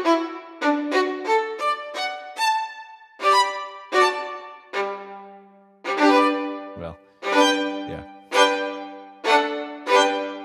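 Sampled solo violin from the CineStrings Solo library, played from a MIDI keyboard: a phrase of separate notes, about two a second, each starting sharply and fading, with a low note held under them from about halfway through. Two soft low thumps come near the end.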